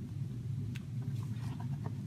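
A few faint clicks and a little handling noise as a micro USB plug is pushed into a tablet's charging port, over a steady low hum.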